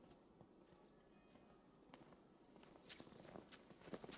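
Footsteps in snow, faint at first and growing louder near the end as the walker comes up close.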